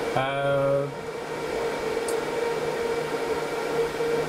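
HPE DL560 Gen10 rack server's cooling fans running with a steady drone and a few steady whining tones. A short held vocal "uhh" sounds in the first second.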